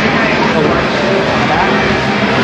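Busy indoor shopping-mall din: a steady wash of background noise with indistinct voices.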